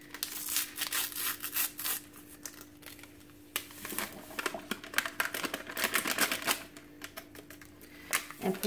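A paper Jell-O packet crinkling as it is torn open and shaken out over a glass mason jar, the gelatin powder pouring in. Two runs of crackly rustling, the second starting about three and a half seconds in, with a quieter moment between them.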